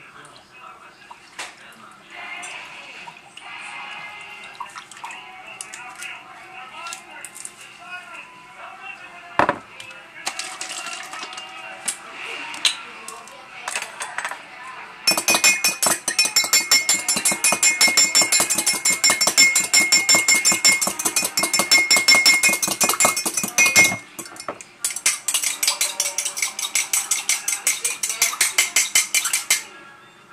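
A metal fork whisking oil and balsamic vinegar in a glass measuring cup: a fast run of clinking strokes against the glass that starts about halfway through, stops briefly, then picks up again until near the end.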